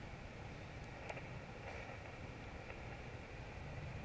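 Faint low wind rumble on the microphone, with a few soft clicks as keys on a handheld radio's keypad are pressed.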